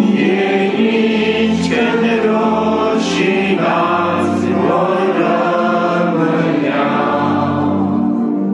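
A group of voices singing a Christian hymn together in long held notes.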